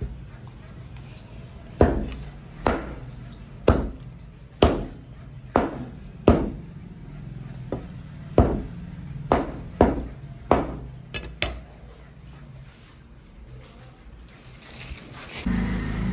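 Heavy butcher's cleaver chopping raw chicken on a wooden log chopping block: about a dozen sharp chops, roughly one a second, that stop a few seconds before the end.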